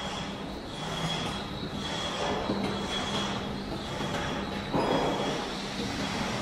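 Automatic 12-nozzle candle wax filling machine running: a steady mechanical hum with a thin high whine from its motors, pump and mesh conveyor, and a louder rush about five seconds in.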